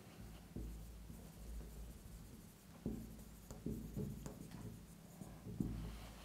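Marker writing on a whiteboard: a string of faint, short strokes as words are written out.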